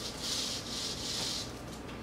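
Small DC hobby motor from an electricity kit spinning a paper spin wheel when the battery wire touches it: a high whirring hiss lasting about a second and a half, fading out shortly before the end.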